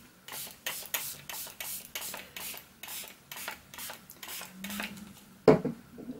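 Hand-pumped fine-mist water spray bottle, sprayed in a quick run of short hissing puffs, about three a second, for some four and a half seconds. The puffs mist the watercolour paper to dampen it for wet-into-wet painting.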